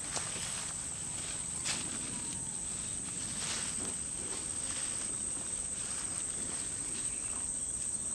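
Steady high-pitched insect chorus, with faint footsteps in the grass.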